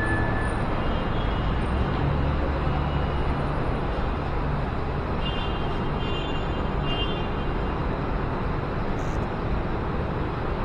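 Steady low rumble of outdoor background noise, with a few faint short high tones about five to seven seconds in.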